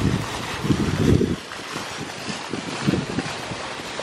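Small garden fountain splashing into a pond: a steady hiss of falling water. Wind buffets the microphone in low gusts, loudest about a second in and again near three seconds.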